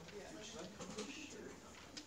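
Faint, indistinct voices talking quietly in a room, with a few small clicks.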